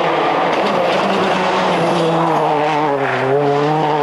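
Ford Focus WRC rally car's turbocharged four-cylinder engine running hard at speed on asphalt, passing close by. Its note dips slightly about two seconds in, then holds steady.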